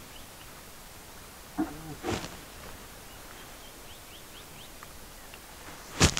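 Quiet bush ambience with faint, short, high bird chirps repeating. A brief low voiced sound comes about a second and a half in, followed by a short sharp noise at about two seconds.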